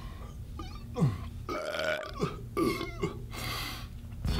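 A man burping several times in a row, each burp dropping in pitch, just after gulping from a can of soda.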